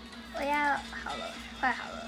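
Two short pitched vocal calls: the first, about half a second in, rises and falls; the second, shorter and falling, comes near the end. A faint steady low tone lies beneath them.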